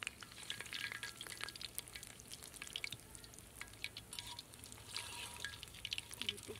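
Banana-batter sweets sizzling and crackling in hot oil in an aluminium karahi, with a slotted metal spoon stirring them and scraping against the pan.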